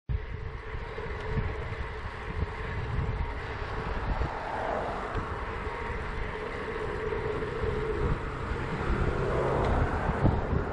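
Riding noise picked up by a bike-mounted camera: wind buffeting the microphone in uneven low rumbles over a steady hum of tyres rolling on asphalt.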